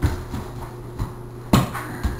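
A few scattered thumps from someone running through a hallway, the loudest about one and a half seconds in.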